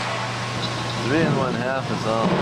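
People's voices talking from about a second in, over a steady low hum of the pool hall's ventilation.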